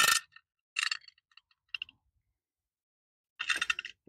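Light metallic clinks and ticks as the metal valve cover of a Briggs & Stratton overhead-valve engine is handled, with a sharp clink at the start and a few more within the first two seconds. Near the end there is a short gritty rattle as the cover is set down on gravel.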